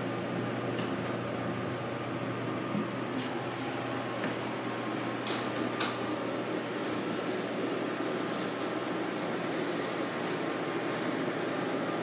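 Steady indoor room noise: a low hum under an even hiss, with a few light clicks around the middle.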